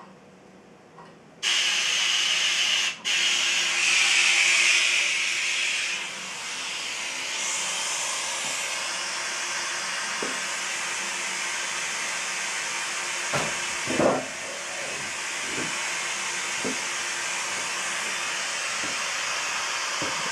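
A recording played from a mobile phone's speaker, heard as a loud, steady hiss that cuts in suddenly about a second and a half in, with a faint low drone beneath it. It drops out for an instant soon after starting. A few low knocks come later on.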